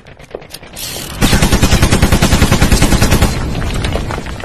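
Machine-gun fire sound effect: a few scattered clicks, then just over a second in a loud rapid burst of about ten shots a second lasting about two seconds, tailing off into a rumble.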